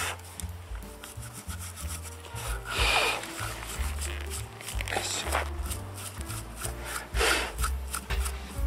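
A small stiff brush scrubbing a rusty brake caliper in quick, uneven rasping strokes, with a few louder strokes, while the caliper is cleaned during a brake pad change. Background music with a stepped bass line plays underneath.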